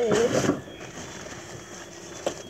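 A person's voice in the first half second, then faint, steady room noise.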